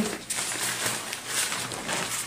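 Nylon fabric of a foldable drone landing pad rustling and crinkling as it is twisted and folded by hand.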